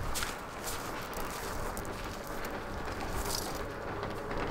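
Electric roller-shutter garage door rolling up, a steady rumble with faint clicks from the slats, with footsteps on gravel.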